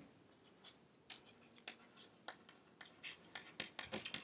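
Chalk scratching on a chalkboard as words are written by hand: short, faint strokes, sparse at first and coming quicker in the last second.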